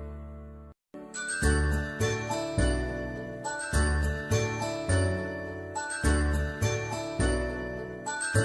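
Background music: a tinkling, bell-like tune over steady bass notes in an even beat. It cuts out briefly just before a second in, then starts again.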